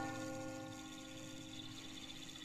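Soft held music chord from the film score, slowly fading, with a faint regular ticking above it.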